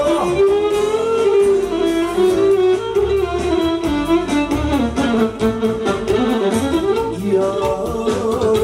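Live band music led by an accordion, with a man singing into a microphone.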